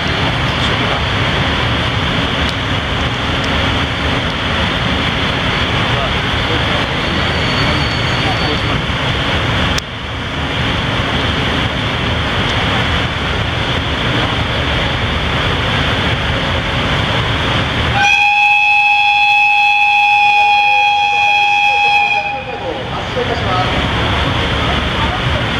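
Steady rumble of a station platform around an electric locomotive standing ready, then about 18 s in the locomotive's whistle sounds one long, steady high note for about four seconds before cutting off.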